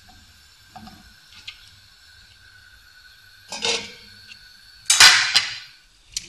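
Utensil noises in a frying pan: a few light knocks, then a clatter about three and a half seconds in. The loudest sound is a sharp metallic clatter with a short ring about five seconds in, as the stainless steel Magic Cooker lid is set onto the pan.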